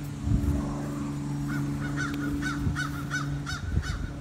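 A bird calling in a quick run of short, repeated calls, about four a second, starting about one and a half seconds in. A steady low hum runs underneath.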